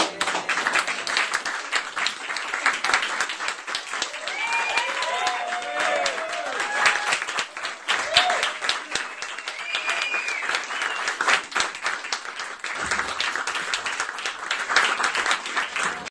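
A club audience applauding steadily, dense clapping throughout, with a few voices calling out over it about four to seven seconds in.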